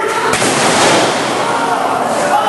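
Fluorescent light tubes bursting and shattering under a wrestler's top-rope dive: a sudden loud pop about a third of a second in, then about a second of breaking glass.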